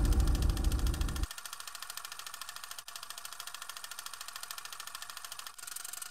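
Rapid, even mechanical clicking, many clicks a second, over a loud deep rumble that cuts off about a second in.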